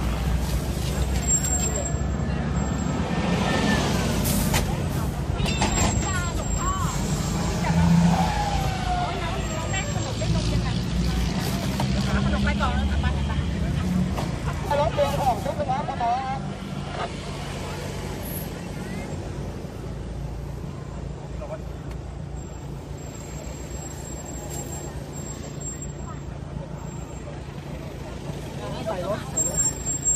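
A vehicle engine running at idle or a crawl, a steady low hum heard from inside the cab, with crowd voices outside in the first half that die away about halfway through.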